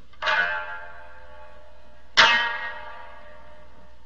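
Satsuma biwa struck twice with its plectrum, about two seconds apart; each note rings out and fades, and the second is the louder.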